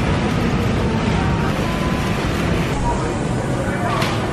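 Steady supermarket background noise: a low rumble of store ambience with indistinct chatter from shoppers.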